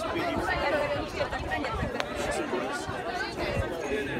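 Chatter of several people talking at once in a crowd, with a single sharp click about two seconds in.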